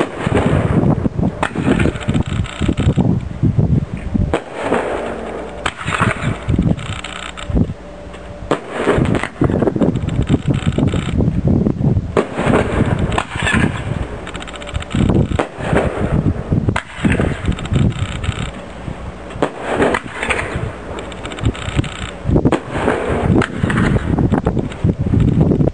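'Indescribable' consumer firework cake firing a long, unbroken run of shots: repeated launch thumps and bangs from aerial bursts, with crackling between them.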